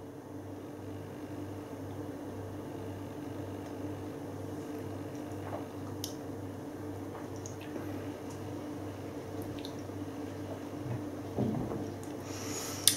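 Faint mouth sounds of a person tasting beer, a sip, a swallow and a few small lip smacks, over a steady low hum.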